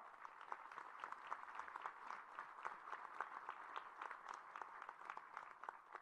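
An audience applauding steadily at a low level, many hands clapping in a dense patter.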